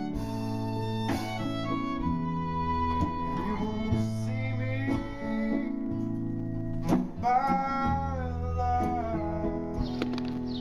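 A keyboard, guitar and fiddle playing a song together: sustained low chords under held and sliding fiddle notes.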